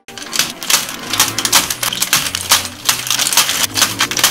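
Crinkly foil Lego minifigure blind bags being handled, a dense, irregular run of crackles and crinkles with sharper clicks.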